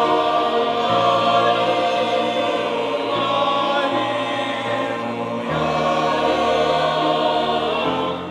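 A mixed church choir of men's and women's voices singing a Russian hymn in sustained chords. The harmony shifts about a second in and again a little past the middle.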